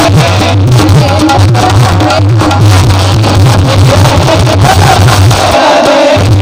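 Loud amplified devotional song: a singer with keyboard and tabla accompaniment over a steady bass beat.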